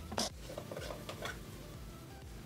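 Fingers squishing and poking soft slime in a glass bowl, giving short sticky popping squelches: one sharp pop just after the start, then a few softer ones, fading out after about a second and a half.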